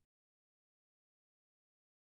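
Silence: the audio track is digitally silent.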